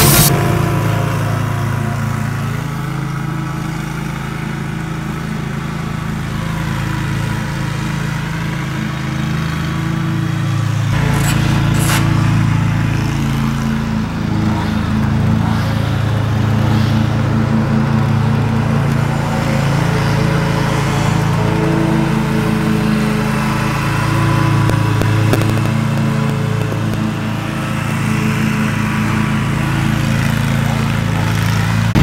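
Bobcat riding lawn mower's engine running steadily under mowing load, with a steady drone throughout.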